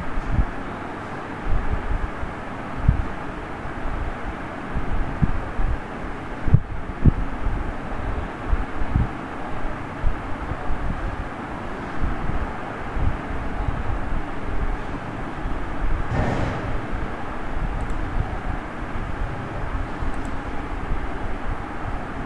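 Steady background rumble and hiss with irregular low thumps scattered throughout, and a brief swell of noise about sixteen seconds in.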